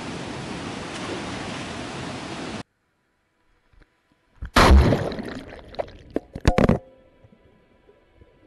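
The steady rush of fast river water, which cuts off abruptly under three seconds in. After a short silence comes the handling noise picked up by an action camera's own microphone as it is lowered on a line into the river: loud knocks, bumps and rumbling for about two seconds, then a muffled, faint underwater hum.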